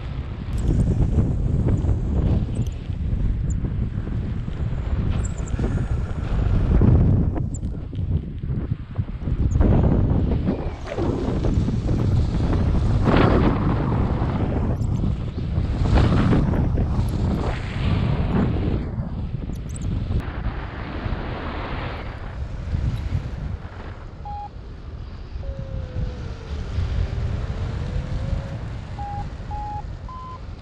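Wind rushing over the microphone of a paraglider in flight, swelling and easing in gusts. Near the end a paragliding variometer sounds faintly: a long low tone that dips and then rises in pitch, followed by a few short, higher beeps.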